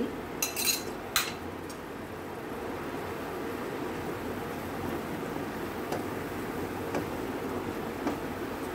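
Masala paste sizzling steadily in oil and butter in a frying pan, with a few spoon clinks against the pan and bowl in the first second or so.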